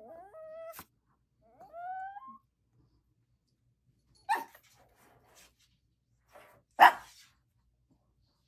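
A small dog, a long-haired Chihuahua, whining twice in short rising whines, then two short sharp sounds, the second the loudest, near the end.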